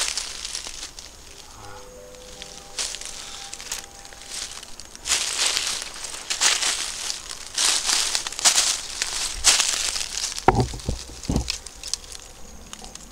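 Footsteps crunching through dry leaf litter on a forest floor, about one step a second, loudest in the second half.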